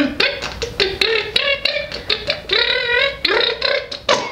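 A woman making silly mouth noises: a quick string of lip pops and clicks mixed with short voiced sounds that bend up and down in pitch.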